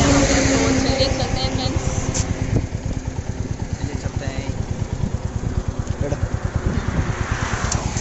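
Wind buffeting the phone's microphone on a moving motorcycle, a heavy fluttering rumble, with the Royal Enfield Meteor 350's single-cylinder engine running underneath at road speed.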